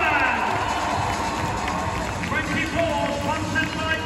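Ice hockey arena crowd with music and voices over the public-address system during the player introductions, a steady, reverberant din.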